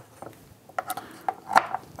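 Glass teaware being handled on a bamboo tea tray: a scatter of small clicks and taps as the glass vessels are lifted and set down.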